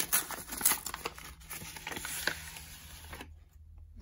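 Paper envelope being torn open by hand: paper tearing and rustling, busiest in the first second and dying away near the end.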